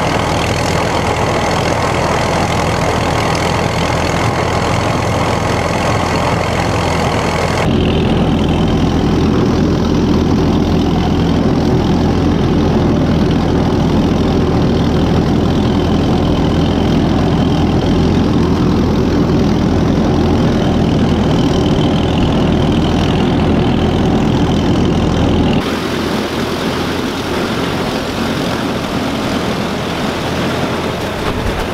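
1940 Allis-Chalmers WC tractor's four-cylinder engine running steadily under load as it drives a one-row corn picker through standing corn. The sound turns abruptly heavier and duller about eight seconds in and changes back a few seconds before the end.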